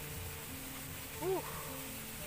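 A man's brief hesitant 'uh' over faint background music with steady held notes.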